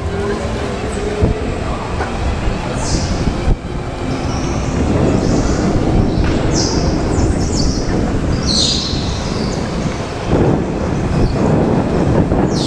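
Go-kart driving on an indoor concrete track heard from on board: steady kart running noise and rumble, with short high-pitched tyre squeals several times as it takes corners.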